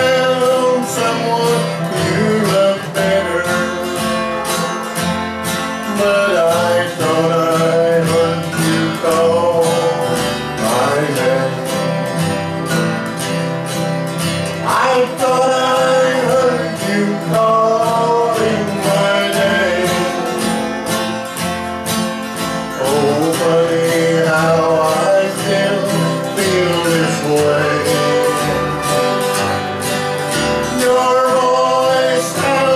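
Acoustic country band music: a steadily strummed acoustic guitar under a melody line that slides up in pitch a few times.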